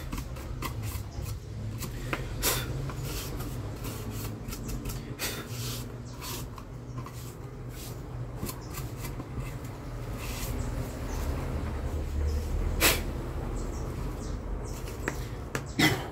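Stiff brush scrubbing dust off the plastic housing and wiring of an opened Arno clothes iron: a run of irregular scratchy strokes, with one sharper click about thirteen seconds in. A low steady hum runs underneath.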